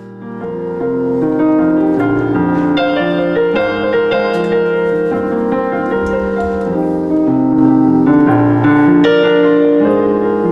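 Robertson RP5000 digital piano played two-handed on its piano sound, with held chords and moving notes. It starts softly and swells to full level within the first second.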